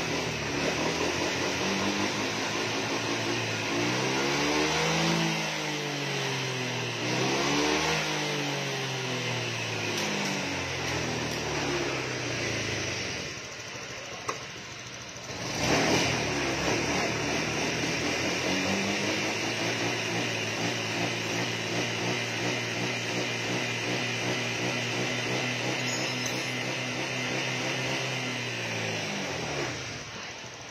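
A fuel-injected Honda scooter engine idling and being revved with the throttle: two quick rises and falls in revs, a brief quieter spell about halfway through, then revs held higher for about ten seconds before dropping back near the end. This is a throttle-response test after the injector was cleaned and the ECU remapped.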